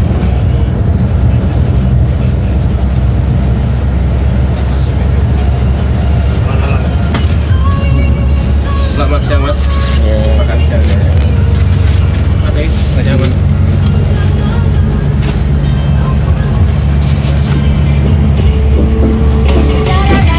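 Steady low drone of a Mercedes-Benz 1626 coach under way, heard from inside the cabin, mixed with background music.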